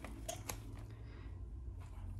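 Faint paper-like rustle and a few light ticks as a thin protector sleeve is pulled off a binder's metal rings and put aside, with a short quiet spell past the middle.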